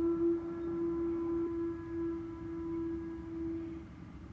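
A single held pitched tone with a few overtones. It starts suddenly and fades out shortly before the end.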